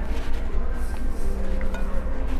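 Restaurant room sound: a steady low hum with faint background music and a couple of light clinks of a metal spoon against the dessert dish.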